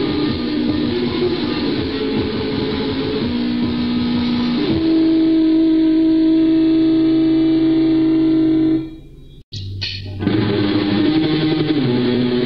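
Lo-fi rehearsal-cassette recording of a raw black metal band: distorted electric guitar riffing, then a held chord that rings out and drops away about nine seconds in. A brief break with a click follows, then the next song starts with guitar riffing about ten seconds in.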